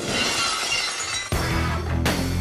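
A glass-shattering sound effect that fades out, then loud music with a heavy bass line starting about a second and a half in.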